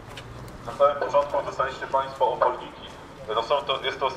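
A man's voice shouting a slogan in short, evenly spaced syllables, in two phrases with a pause of about a second between them, over the low background noise of a marching crowd.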